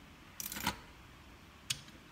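A quiet room with a short soft rustle about half a second in and a single sharp click near the end.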